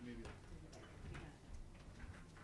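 A few faint sharp clicks and taps, roughly one every half second, over a low murmur of voices in a quiet room.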